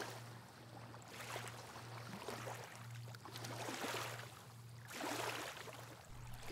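Gentle Baltic Sea waves lapping on a sandy shore, rising and falling in soft swells every couple of seconds. A faint low steady hum runs underneath.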